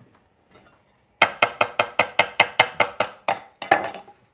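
A chef's knife chopping herbs on a wooden cutting board: a quick, even run of about fourteen knocks, about five a second, each with a short metallic ring from the blade.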